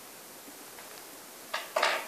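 Quiet room tone with a steady hiss, broken near the end by a brief, soft noise of about half a second.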